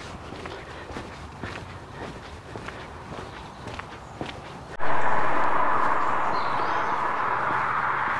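Footsteps walking on a pavement, fairly quiet. About five seconds in, a much louder rushing noise starts abruptly and slowly fades.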